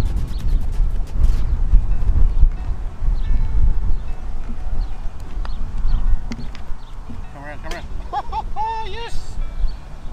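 Wind buffeting the microphone: a heavy low rumble that surges and falls. A man's voice is heard briefly near the end.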